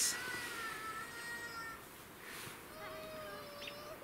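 A child crying out in the distance after a fall: a long, faint wail that falls slightly, then a second drawn-out cry starting near the end.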